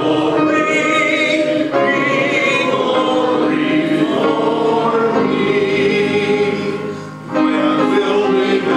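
A congregation singing a hymn together in held notes, with a short break between lines near the end.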